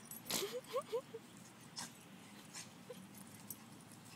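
Pomeranian giving four quick, short whimpers, each rising in pitch, within the first second, with a brief noisy snort or rustle just before them and another about two seconds in.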